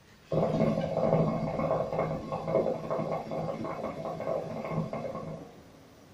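Hookah water base bubbling as a long drag is pulled through it. The bubbling starts a moment in and stops about five and a half seconds in.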